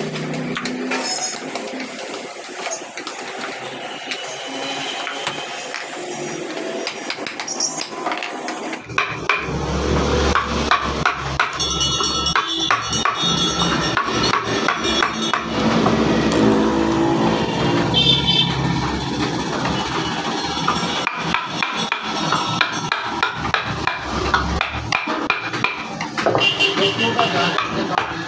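Repeated knocks of a mallet driving a carving chisel into wood, with music in the background. About nine seconds in the sound changes, a low hum joins, and the knocks come thicker.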